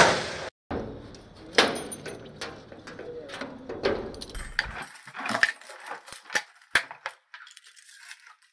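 Keys and a metal padlock being worked at the bolt latch of a steel door: a loud clack at the start, then jangling and a series of sharp metal clicks and clinks, thinning out in the last few seconds.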